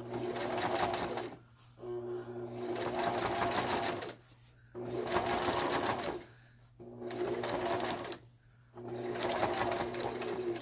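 Electric home sewing machine stitching fabric onto a paper page in five short runs. The motor picks up speed and slows again in each run, with brief pauses between them as the ruffle is gathered by hand.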